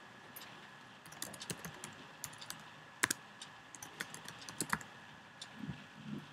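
Typing on a computer keyboard: quick, irregular key clicks in short runs, with one louder click about three seconds in.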